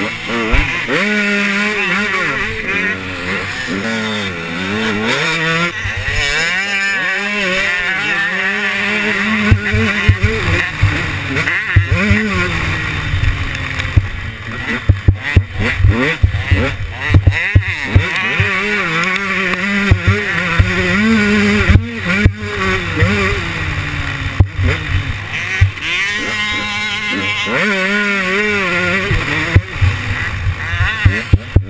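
KTM 125 two-stroke motocross bike's engine, recorded on the bike, revving up and falling back again and again as it is ridden and shifted round the track. Sharp knocks are scattered through the second half.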